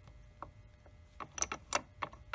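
Light, sharp clicks of steel transmission gears being handled by hand inside an opened Harley-Davidson Shovelhead gearbox case: a single click, then a quick run of five or six clicks in the second half.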